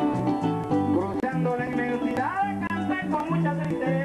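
Live Venezuelan llanero music: harp and other plucked strings with maracas over bass notes in a quick repeating pattern, and a man singing over the band.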